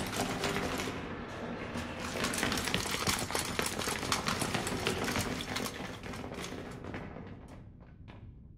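Footsteps of a group of armoured soldiers marching, a dense, rapid clatter that thins and fades away near the end.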